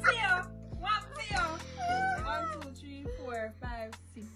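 High-pitched squealing, laughing voices over background music with a steady, slow beat.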